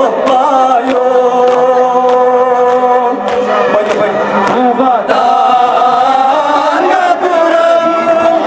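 A group of men chanting a Kashmiri noha (Muharram lament) in unison through microphones, the lead voices holding long, slowly bending notes. Sharp slaps sound every half second to a second, typical of hands beating on chests.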